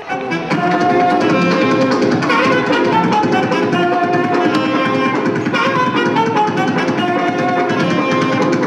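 Swing jazz band playing, with saxophone and trumpet carrying the melody over drums. The music cuts in suddenly at the start.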